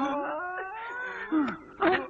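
A man's voice crying out in strain or pain: one drawn-out, wavering moan that rises in pitch, followed by a short, loud cry near the end.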